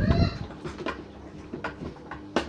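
Miele toy washing machine running during its first rinse: a steady low motor hum with scattered light clicks and sloshes from the turning drum. A short, loud pitched cry comes at the very start.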